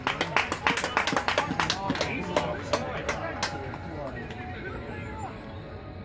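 A small group of spectators clapping, a run of irregular handclaps that dies away about three and a half seconds in, followed by faint voices and shouts from around the pitch.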